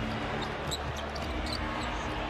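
Basketball dribbled on a hardwood court over steady arena crowd noise, with short high squeaks every few tenths of a second.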